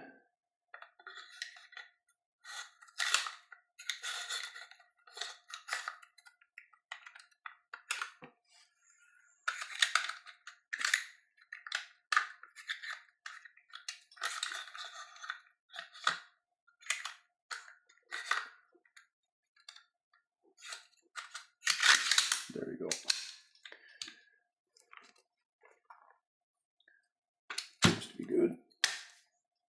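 Metal parts of a Sig Sauer MCX Spear LT carbine clicking, sliding and clacking as the lubed bolt carrier and recoil assembly are worked into the receiver: irregular sharp clicks and short scraping rattles, with the loudest burst about 22 seconds in.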